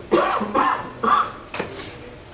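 A man coughing and clearing his throat into a lectern microphone: one longer burst, then two shorter coughs, the last about a second and a half in.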